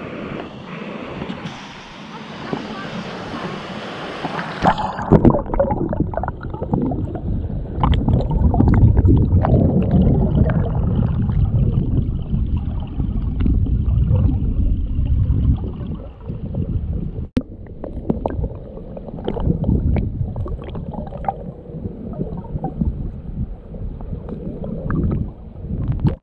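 Shallow river water rushing over rocks. About five seconds in, the sound turns muffled as the microphone goes underwater, giving a low churning rumble of current and bubbling with scattered small clicks.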